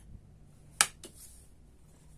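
A sharp tap a little before one second in, then a fainter one just after, as a stiff oracle card is laid down on the tabletop.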